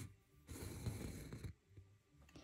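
Embroidery floss, six strands waxed with beeswax, being pulled through osnaburg cloth stretched in a hoop: a faint soft rasp lasting about a second.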